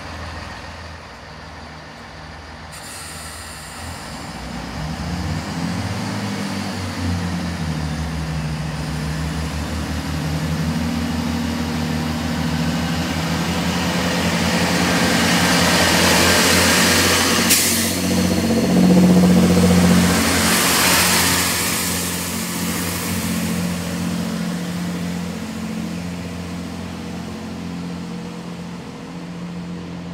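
Diesel multiple unit pulling away. Its underfloor diesel engines rev up in steps and grow louder, and wheel and rail noise peaks about halfway through as the train passes close by, then fades.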